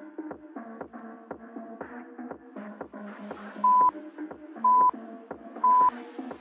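Electronic background music with a steady beat, then three loud, short, identical high beeps a second apart near the end: a workout interval timer counting down the end of the work set.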